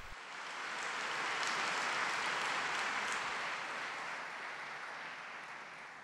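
Large audience applauding, swelling over the first two seconds and then slowly dying away.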